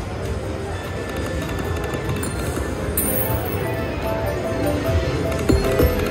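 Video slot machine's electronic game music and spin jingles, with short melodic tones toward the end as the reels land into a bonus, over a steady casino background.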